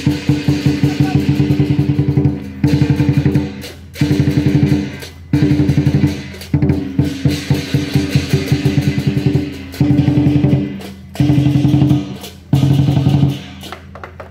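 Chinese lion dance drum beaten in fast rolls, in phrases of roughly a second broken by short pauses, with cymbals clashing along.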